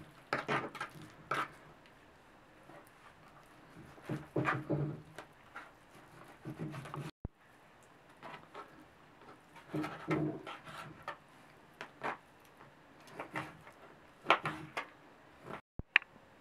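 Kitchen knife cutting raw beef into cubes on a plastic cutting board: short clusters of knocks and taps as the blade goes through the meat and meets the board, with a sudden break about seven seconds in.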